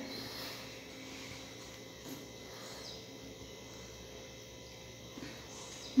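Quiet room tone: a faint steady hum and low background noise, with a couple of soft, brief small sounds.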